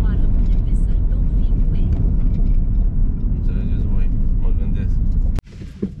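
Steady low rumble of engine and road noise inside a car's cabin while driving, which cuts off abruptly near the end.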